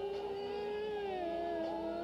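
A woman singing a long held note on a vowel, which slides down a step in pitch a little past the middle.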